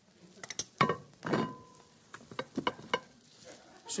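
Metal tongs clinking and knocking against the grill grate and a china plate as grilled wild boar chops are lifted onto the plate, with a faint sizzle from the grill underneath. There are a handful of sharp clinks in the first three seconds, two of them ringing briefly.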